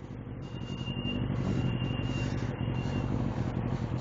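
Bicycle brakes squealing: a thin, high, steady squeal lasting about two and a half seconds, over steady road and wind noise on a wet road. The squeal comes from the brake pads, which the rider means to replace.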